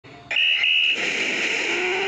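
A high, steady alarm-like beep sounds twice in quick succession, then a loud steady rush of splashing water as the mosasaur breaches from the lagoon in the film soundtrack.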